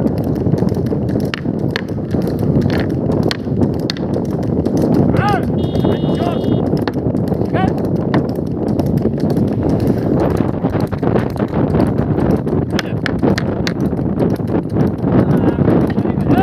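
A bullock cart at a trot on a paved road: the bull's hooves clip-clopping amid the continuous rumble and rattle of the wooden cart, with frequent sharp knocks. A few short rising-and-falling calls are heard partway through.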